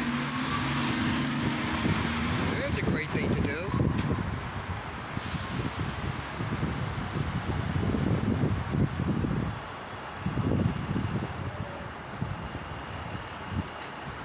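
City street traffic: vehicles running and passing close by, with a steady engine hum in the first two seconds.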